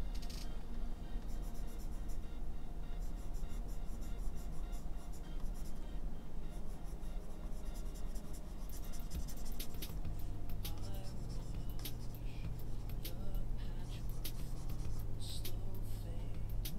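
Stylus tapping and scratching on a drawing tablet in quick clusters of ticks as strokes are painted, over quiet background music with held low notes.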